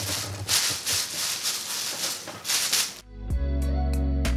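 Clear plastic processing cap crinkling and rustling as hands press and adjust it on the head. About three seconds in, background music with a steady bass and plucked notes takes over.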